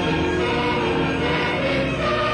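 A church choir with boy trebles singing sustained chords.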